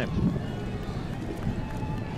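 Outdoor street ambience: a low, steady rumble with a faint, even background noise.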